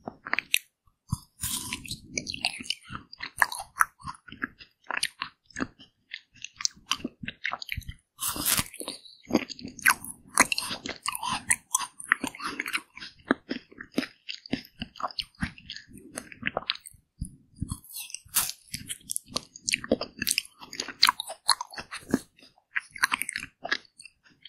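Repeated crunchy bites into a frozen yellow watermelon ice bar and chewing of the icy pieces, with many sharp wet mouth clicks.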